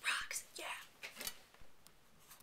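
A woman's soft, whispered voice in three short bursts, breathy and without pitch, with a couple of light clicks.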